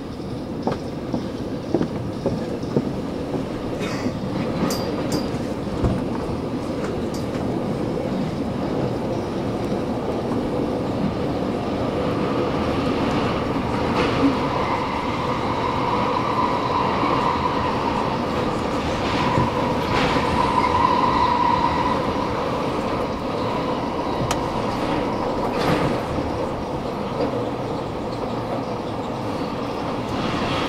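Commuter train running along the rails, heard from inside the carriage: a steady rumble, with a quick series of clicks from the wheels over the track in the first few seconds. A high whine swells in the middle and then fades.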